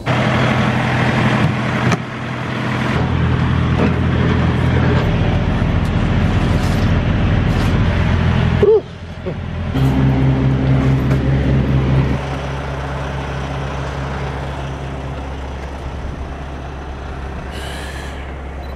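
Semi-truck diesel engine running steadily, its note shifting a few times, with a brief drop about nine seconds in.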